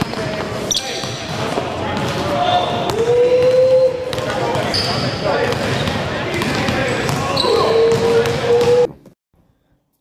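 A basketball being dribbled on a gym floor, repeated bounces amid voices in a large hall; the sound cuts off abruptly about a second before the end.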